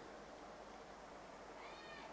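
Near silence, just room tone, with one faint, brief high-pitched call near the end.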